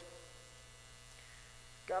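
Steady low electrical mains hum in the sound system during a pause in speech.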